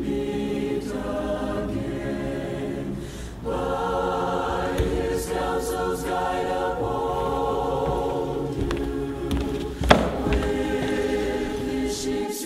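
A choir singing slow, sustained chords. Near the end there is a single brief sharp knock.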